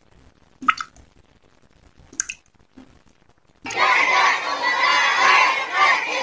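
Water-drop sound effects: single drips about a second and a half apart over near quiet. A little past halfway, a loud crowd of children shouting and cheering suddenly cuts in.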